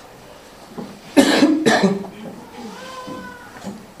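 A single loud cough about a second in, in two quick bursts, then a faint held voice sound.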